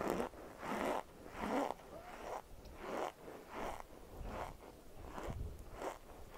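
Cornstarch chunks crunching between the teeth as they are chewed, with a dry, squeaky crunch about every three quarters of a second.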